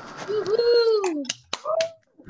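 Several sharp clicks, like finger snaps, with a voice calling out in one drawn-out tone that rises and then falls, and a shorter rising call near the end.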